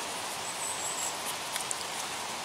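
Steady outdoor background hiss with no clear event, a faint thin high whistle about half a second in, and a few faint ticks near the end.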